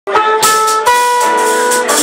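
Live small-group jazz: a horn holds one long note, then a second long note from just under a second in, over the rest of the band.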